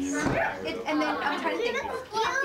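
Several people talking at once: overlapping conversational chatter, with a short sharp sound about a quarter second in.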